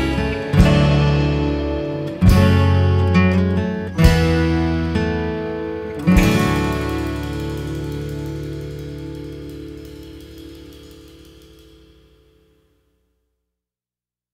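Closing chords of an Americana band's song, led by acoustic guitar: four chords struck roughly every second and a half to two seconds, the last one about six seconds in left to ring until it dies away.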